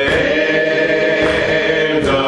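Hymn singing led by a man's voice, holding one long note that slides up into pitch at the start.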